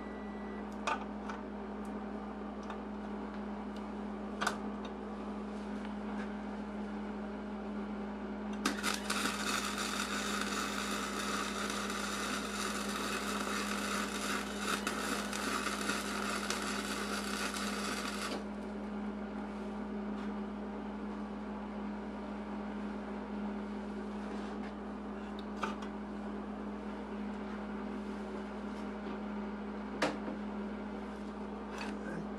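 Arc welding: the arc crackles and hisses for about ten seconds, starting about nine seconds in and cutting off suddenly, over a steady low hum.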